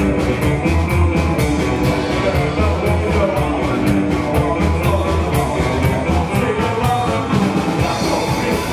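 A rock and roll band playing live: hollow-body electric guitar, upright double bass and drum kit, with a fast, steady beat.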